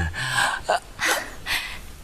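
A person gasping and breathing hard, about four short, sharp breaths in quick succession.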